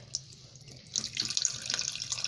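Running tap water splashing onto a ball of ice in a stainless-steel sink, a thin stream that grows louder from about a second in.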